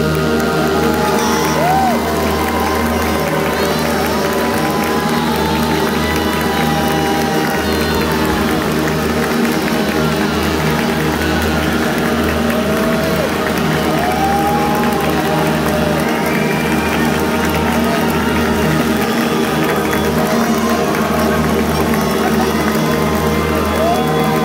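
Middle-school concert band of woodwinds and brass playing, with the audience cheering and whooping over the music.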